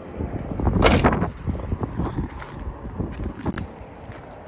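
Wind rumbling on the microphone outdoors, with a louder noise burst about a second in and scattered knocks and scuffs after it.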